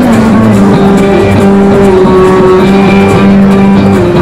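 Loud live country band music: an instrumental passage with long held notes over guitar, heard through a camcorder's microphone.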